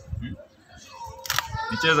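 Soft handling knocks, then a brief squeak and a single sharp click about a second and a half in, followed by a short questioning 'hm?'.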